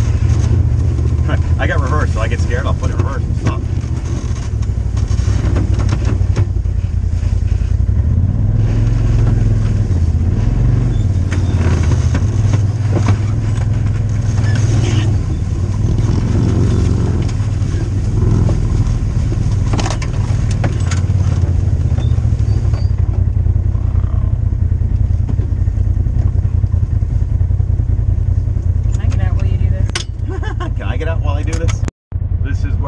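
Off-road vehicle engine running steadily at low trail speed, its pitch wavering a little with the throttle, with occasional knocks and rattles from the rough trail.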